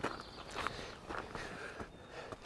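Faint footsteps of a person walking across gravel and onto stone steps, a soft step roughly every half second.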